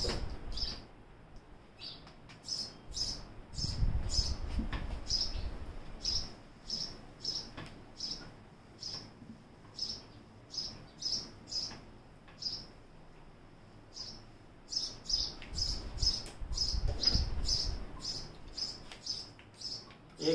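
A small bird chirping over and over, short high chirps at one pitch, roughly two a second, with a pause a little past the middle. Underneath, bursts of low rubbing noise about four seconds in and again near the end, as a whiteboard is wiped with an eraser.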